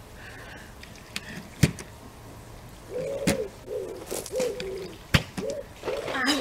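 A pigeon cooing in a series of short, repeated calls from about three seconds in. A few sharp knocks from a plastic water bottle hitting the ground as it is flipped, the loudest about five seconds in.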